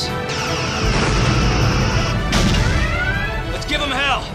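Sci-fi space-battle sound effects: a long, heavy explosion rumble with a hissing top, and a sharp impact hit about two and a half seconds in, over orchestral film score.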